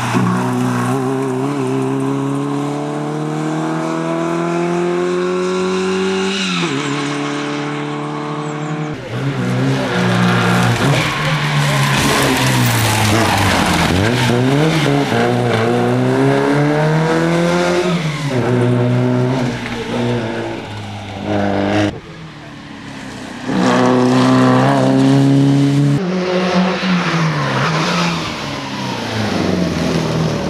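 A historic rear-engined Škoda rally saloon driven hard. Its four-cylinder engine rises in pitch as it accelerates, drops back at gear changes and on lifting off, then climbs again. Through the middle the tyres scrabble and slide on loose gravel.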